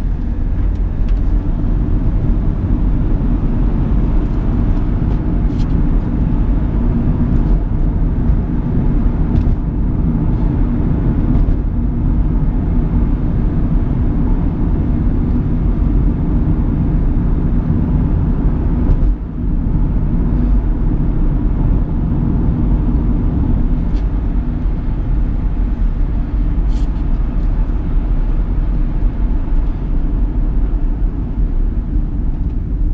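In-cabin engine and road noise of a 2010 Chevrolet Captiva's 2.0 VCDi four-cylinder turbodiesel at road speed, a steady low noise that dips briefly once about two-thirds of the way through.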